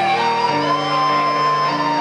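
Live instrumental music in a concert hall: a slow melody of long held notes over sustained lower tones, with the lower part changing pitch about half a second in.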